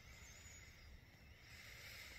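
Near silence: faint low background rumble and hiss.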